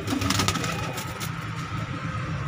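Young domestic high-flying pigeons cooing in a loft, with a few sharp clicks in the first half second.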